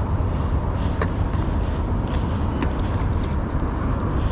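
Steady low rumble of wind buffeting the camera microphone, with a few light clicks as the rod and fishing line are handled.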